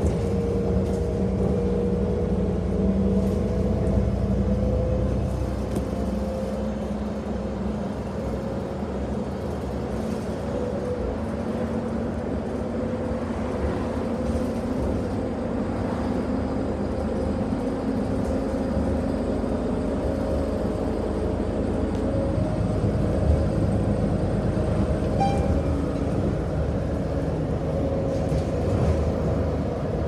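City transit bus under way, heard from inside the passenger cabin: the engine and drivetrain run steadily under a constant rumble of road and tyre noise, with a faint whine that drifts slowly in pitch.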